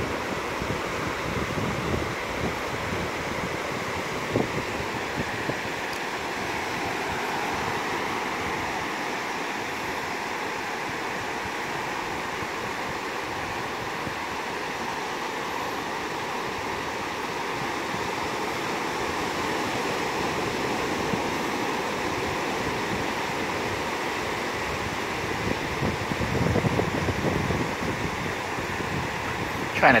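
Ocean surf washing steadily onto a beach, with wind buffeting the microphone in a low rumble that gets louder in gusts near the end.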